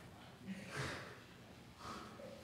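Quiet church room sound with a short breathy noise from a person just under a second in, a smaller one near the end, and faint low voices.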